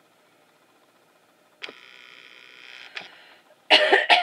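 Camera lens zoom motor whining steadily for about two seconds as it zooms back out, starting suddenly after a near-silent moment. Near the end, a woman clears her throat loudly.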